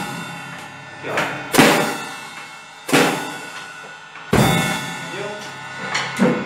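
Acoustic drum kit played slowly: a few single hits over about five seconds, the last two about a second and a half apart. Each hit joins a deep bass drum thump with a cymbal that is left ringing.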